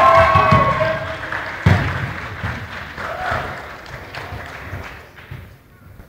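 Loud shouting voices, several pitches held together, fading within the first second, then a single sharp thud about a second and a half later over the murmur of a crowd in the hall.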